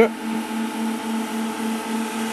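Steady hum of the powered-up RapidTrace SPE modules' cooling fans, with a low tone throbbing several times a second under steadier higher tones.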